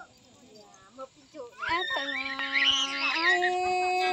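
A voice singing in a call-and-response folk duet. After a short pause it comes in about a second and a half in with long drawn-out notes, one held steady and then a higher one held on.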